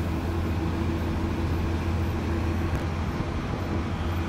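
Bus engine and road noise heard from inside the bus, a steady low drone with a constant hum as it climbs a mountain road.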